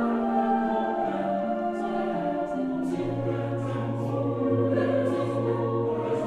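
Background choral music: a choir singing slow, sustained notes that step from one to the next, with a low held bass note coming in about halfway through.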